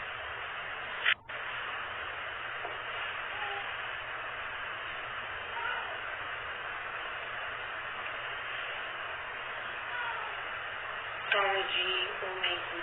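Steady hiss of a muffled, low-quality recording, broken about a second in by a short loud crackle and a momentary dropout. A voice comes in near the end.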